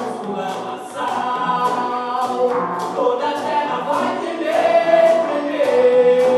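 Live band playing a song: voices singing together over conga drums, electric guitar and saxophone, with a steady percussion beat. A long note is held near the end.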